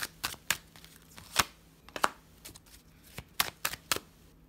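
A deck of tarot cards being shuffled by hand: about a dozen sharp, irregular card slaps and snaps, the loudest about one and a half seconds in and again near three and a half seconds.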